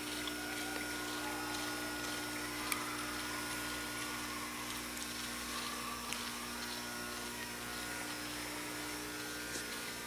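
Steady mechanical hum of a large room's ventilation, a few constant tones over a low hiss, with one faint click a little under three seconds in.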